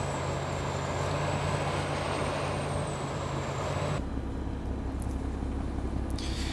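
Komatsu PC410LC excavator's diesel engine running steadily, with a thin high whine over it. About four seconds in the sound changes suddenly to a quieter, lower hum of the same running machine.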